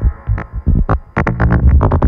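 Buchla Red Panel modular synthesizer patch playing short, sharply struck pitched notes over low bass pulses. After a sparser first second with a fading held tone, a quick run of notes starts again just past the middle.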